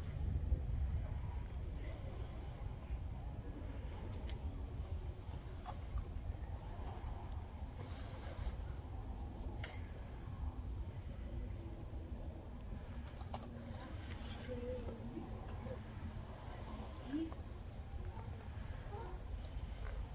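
Steady high-pitched insect trill, with a few short breaks near the end, over a constant low rumble.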